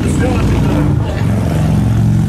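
Electric bass and electric guitar holding low notes through the amplifiers, a few sustained notes in a row without drums.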